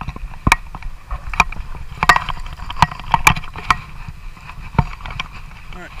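Water splashing with irregular sharp knocks and clicks as a small brown trout is drawn into a landing net and lifted from the water.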